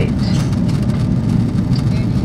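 Steady low roar of a jetliner's engines and airflow, heard from inside the passenger cabin in flight shortly after takeoff.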